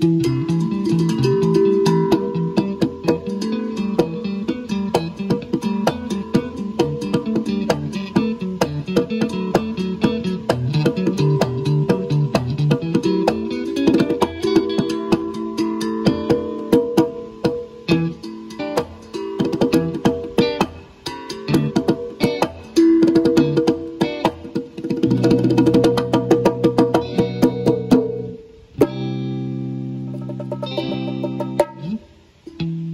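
Guitar playing a melodic line of picked notes over a moving low line. Held chords ring out in the last few seconds, with a brief break just before the end.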